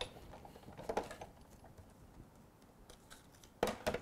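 Sizzix hand-cranked die-cutting machine running a cutting sandwich and magnetic platform through its rollers: quiet, with a few faint clicks, then a sharp double knock near the end.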